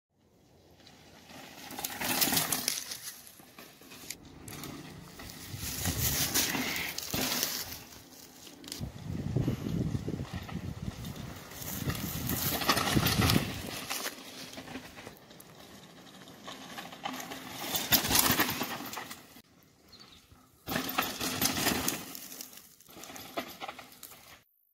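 Mountain bike ridden on a dry dirt trail: tyres rolling and skidding over loose dirt and gravel, the noise rising and fading in several swells as the rider passes, with sharp knocks from the bike. One swell starts abruptly near the end.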